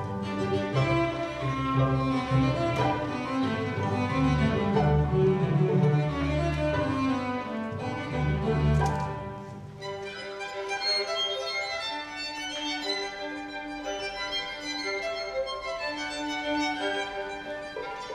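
String quintet of two violins, viola, cello and double bass playing live. For the first half the cello and double bass are prominent in the low register under the upper strings; about halfway through the low parts thin out and the violins carry the music over a lighter accompaniment.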